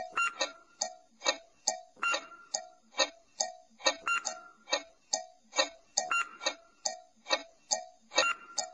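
Clock-ticking sound effect for a quiz countdown timer: a steady run of short ringing ticks, about two or three a second.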